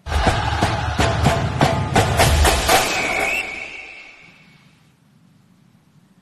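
Short TV segment intro stinger: a burst of music with a fast run of sharp percussion hits over deep bass, then a high tone that fades away about five seconds in.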